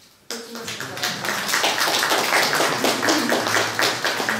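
Audience applauding, breaking out suddenly a moment after a pause and carrying on steadily.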